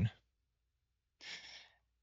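A person's short, soft breath, a sigh-like exhale, about a second and a half in. Before it is the clipped end of a spoken word and a pause with almost nothing to hear.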